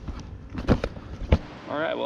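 A few short, sharp knocks and clunks as a fish and a hard-plastic ice pack are handled into a soft-sided cooler on a kayak. A man starts talking near the end.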